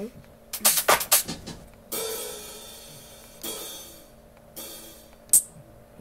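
Drum and cymbal samples played back through the DJ setup to show a groove: a quick cluster of drum hits about half a second in, then three cymbal or hi-hat hits that ring out and fade, and a sharp single hit near the end.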